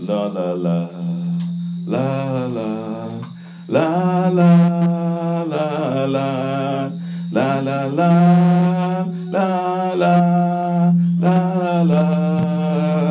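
A voice singing or chanting long, held, wordless phrases over a steady low drone, each phrase lasting a couple of seconds with short breaths between.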